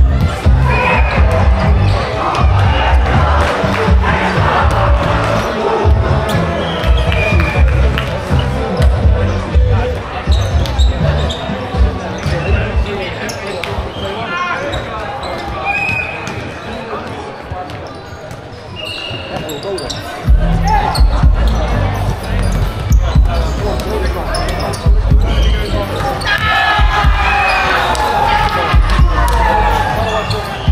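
Indoor volleyball in a large, echoing sports hall: balls being struck and bouncing on the wooden floor in irregular knocks, with players' and spectators' voices. A quieter lull comes just past the middle before play picks up again.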